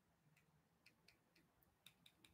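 Near silence with faint, evenly spaced clicks, about two a second.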